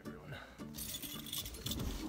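Keys jingling, with clothing rustling, as someone moves about in a car's front seat.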